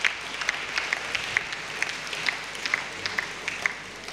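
Audience applauding in a large hall, sharp individual claps standing out over a steady patter; it thins out near the end.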